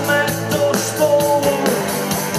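Rock band playing live: electric guitars, bass guitar and drums with a steady beat.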